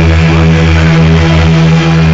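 Loud live electronic music from a synthesizer keyboard: a held, buzzy chord over a pulsing bass, several pulses a second.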